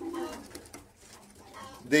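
Racing pigeon cooing: one low coo in the first half-second, then only faint sounds.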